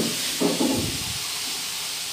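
A steady hiss of background noise with no speech, and a faint low rumble briefly about half a second in.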